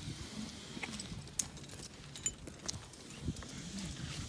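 Scattered sharp clicks and knocks of rappel gear and shoes against granite rock during a rappel descent, over a faint, low wavering hum.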